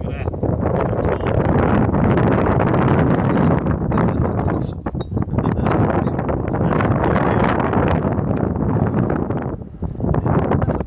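Heavy wind buffeting on the microphone, a loud, rough rumble that eases briefly about halfway through and again near the end.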